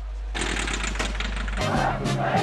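A taxi's engine running with a steady low hum, then a louder, rougher engine noise from about a third of a second in. It cuts off sharply near the end, where music begins.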